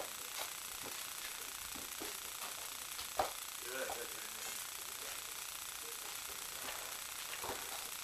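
Low room hiss with faint murmured voices and a single sharp thump about three seconds in, with a weaker knock near the end.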